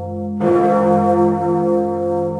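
A large, deep bell tolling. A fresh strike comes about half a second in, over the long ringing hum of the previous one.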